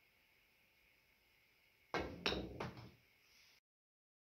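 A pool cue strikes a golf ball used as the cue ball about two seconds in, followed within about two thirds of a second by two more sharp clicks of golf balls knocking together or against the cushion.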